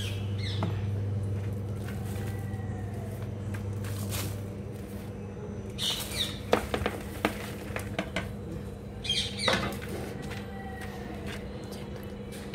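Loose soil being poured into a terracotta pot and pressed down by hand over vegetable peels and dry leaves: scattered rustles and a few soft knocks, mostly in the second half, over a steady low hum.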